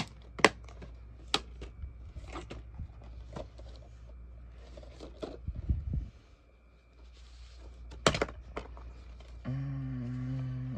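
Plastic DVD cases being handled and knocked against each other, a scatter of sharp clicks and clacks with the loudest near the end, plus a dull thump about halfway through.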